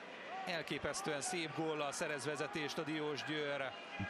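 A man's voice in the stadium background, speaking or calling out, well below the level of the commentary.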